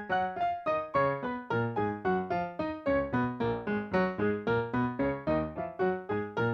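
Piano playing a fast F-sharp major scale in octaves with both hands, several evenly struck notes a second, running down the keyboard and then climbing back up.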